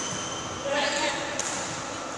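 A person's voice, brief and wordless, about a second in, followed by a single sharp knock.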